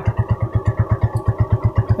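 Small single-cylinder 125 cc motorcycle engine idling steadily, an even pulse of about twelve beats a second. It keeps running although soaked with water, a sign that its ignition wiring is in good condition.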